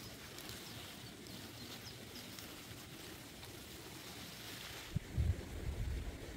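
Outdoor ambience with faint, scattered bird chirps, and a few low thumps in the last second.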